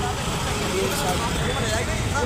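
Steady rumble of road traffic on a busy city street, with voices mixed in.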